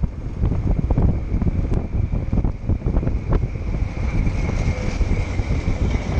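Wind buffeting the microphone of a moving camera riding along with a bicycle, a dense irregular rumble with road noise underneath. A thin steady high whine runs through it.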